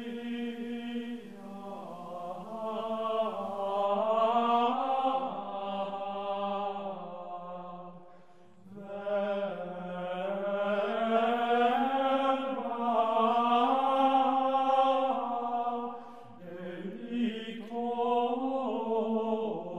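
Slow, meditative background music: sustained chant-like tones moving in a gentle melody over a steady low drone, in long phrases that fade briefly about eight and sixteen seconds in.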